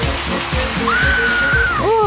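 Hand-held fire extinguisher spraying: a steady, loud hiss of discharge, over background music.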